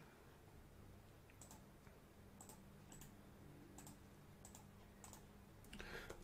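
Near silence with faint, scattered clicks of computer keys, about half a dozen over several seconds.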